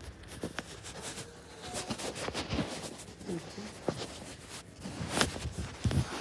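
Footsteps on a wooden floor, with scattered knocks and rustles from a handheld phone being carried.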